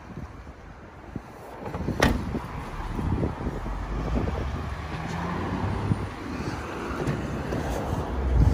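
A car's hatchback tailgate shut with a single thud about two seconds in. It is followed by wind buffeting the microphone over a low rumble of traffic.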